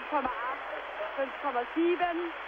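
A man's voice commentating in German over a steady wash of arena crowd noise.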